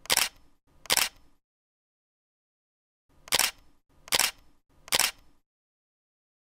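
Camera shutter clicks, added as a sound effect: two near the start, then a silent gap of about two seconds, then three more about 0.8 s apart.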